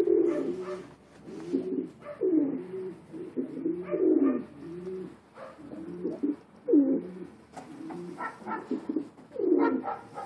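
Several domestic pigeons cooing, one low call after another with calls overlapping.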